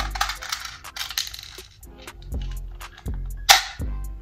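Small clicks and rattles of a cheap BB gun and its magazine being handled and loaded, with one loud, sharp burst about three and a half seconds in. Background music plays underneath.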